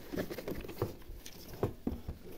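Fingers tapping and scratching on a toy box's cardboard and clear plastic window: a string of light, irregular taps, the sharpest ones near the end.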